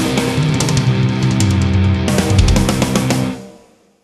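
Heavy rock music with electric guitar, with the full band playing until the track fades out quickly over about half a second, near the end.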